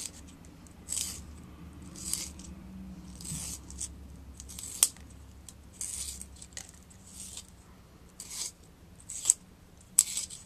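Wooden pencil being twisted in a small handheld sharpener: a string of short, dry scraping strokes about once a second as the blade shaves the wood, with a sharp click about halfway through and another near the end.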